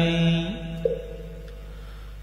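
A chanting voice holds the last note of a line of Vietnamese verse and stops about half a second in; a soft, sustained backing note carries on through the pause, shifting pitch once.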